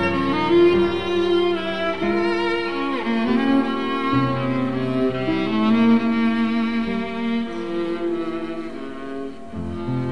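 Slow music on bowed strings: long held notes in a melody over a lower sustained string line.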